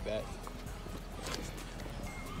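Footsteps and handling knocks on a handheld phone's microphone while walking, with a brief voice sound at the very start.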